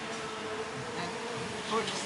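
A flying insect buzzing in one steady, even drone that stops shortly before the end.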